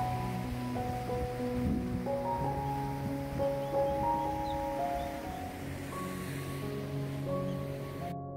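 Slow, soft instrumental background music with held notes, laid over the steady hiss of sea surf and wind.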